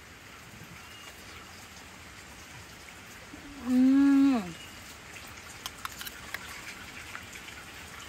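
A person's drawn-out hum, "mmm", about halfway through, held level and then falling in pitch, over a faint steady hiss. A few light clicks follow it.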